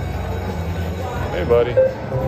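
Goblin's Gold video slot machine spinning its reels, with a few short electronic tones as the reels stop, about a second and a half in, over a steady low casino hum.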